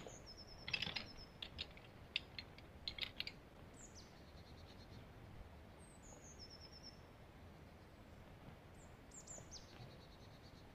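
Faint clicks and light rattles from a folding camp chair's frame poles being fitted together, clustered in the first few seconds. Over this, a small bird sings a short, high, descending phrase, about three times.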